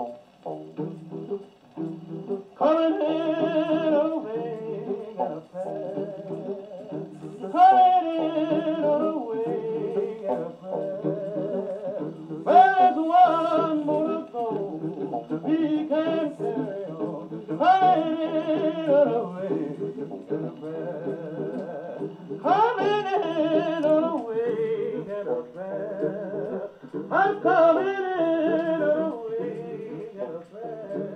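Victor Credenza acoustic wind-up phonograph playing a 78 rpm record of a male gospel quartet singing in close harmony. Sung phrases swell about every five seconds over a steady hum of voices. The sound comes through the machine's horn thin, with no deep bass and no sparkle on top.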